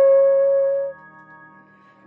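B-flat soprano saxhorn holding one steady note that stops about a second in, followed by a quiet breath pause between phrases of a hymn melody.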